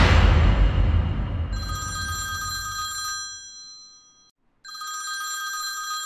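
A sudden sound-effect hit at the start, its low rumble fading over about three seconds. From about a second and a half in, a smartphone rings for an incoming call: a steady ring tone, broken by a short silence just after the four-second mark, then ringing again.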